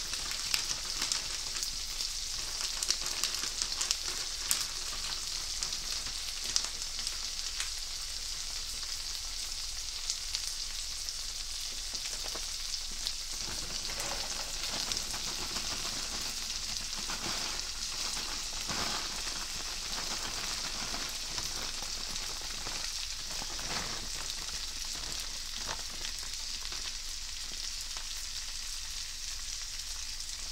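Spicy Thai shrimp fried rice sizzling in butter in a skillet: a steady frying hiss with small crackling pops, and a few louder stirring strokes through the middle.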